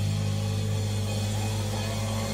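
A live metal band's distorted guitar and bass holding one low chord, ringing out steadily with no drumbeat, over a wash of high-pitched hiss.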